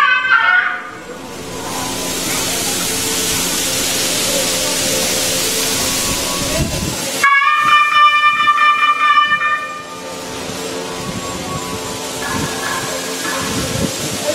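A steady hiss for about six seconds, then a single held note from a wind instrument lasting about two and a half seconds, over a faint steady hum.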